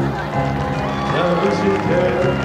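Music with a voice singing or calling over it, whose pitch slides up and down.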